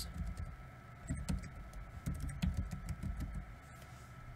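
Computer keyboard being typed on: a scattering of irregular key clicks with soft low thumps.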